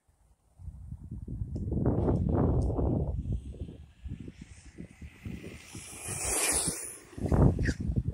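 Wind rumbling and buffeting on the microphone, with a high hiss about six seconds in from a brushless RC car speeding along the asphalt on a top-speed run.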